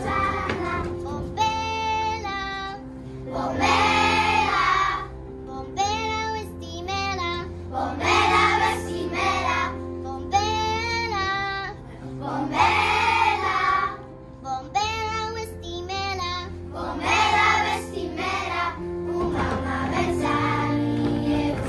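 Children's choir singing together over a steady instrumental accompaniment of held chords, in short phrases with brief breaths between them.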